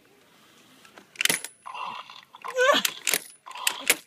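Toy sounds: near quiet for about a second, then short bursts of mechanical whirring, clicking and rattling.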